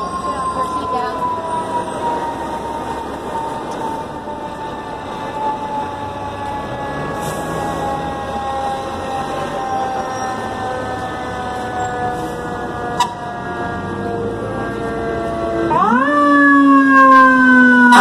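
Fire engine siren: a long wail that slowly falls in pitch over many seconds, then about two seconds before the end winds up sharply, loudest here, and begins to fall again. Busy street noise underneath.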